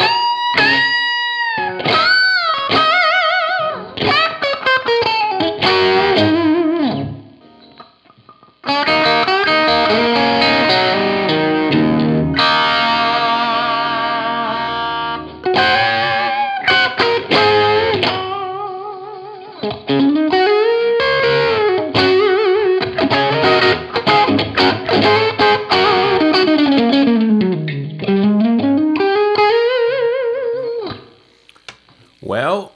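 Electric guitar played through a NUX Steel Singer overdrive pedal into a 5150 amp's clean channel, giving a mildly driven lead tone. It opens with held bent notes with vibrato, then a ringing chord held for several seconds, then lead phrases with a pitch swoop down and back up near the end.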